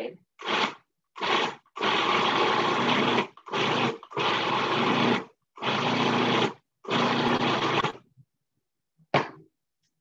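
Food processor pulsed in seven bursts, some short and some over a second long, its motor starting and stopping as it chops basil into tofu ricotta without pureeing it.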